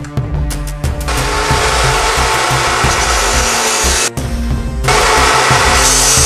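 Metabo CS 23-355 abrasive cut-off saw grinding through metal, a harsh noise that starts about a second in, breaks off briefly about four seconds in, then resumes louder and hissier. Background music plays throughout.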